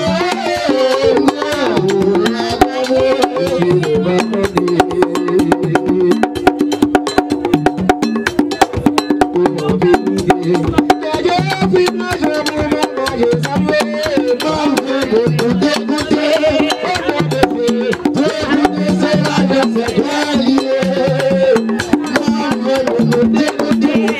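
Haitian Vodou drumming: hand drums beating a fast, steady rhythm under a sung chant.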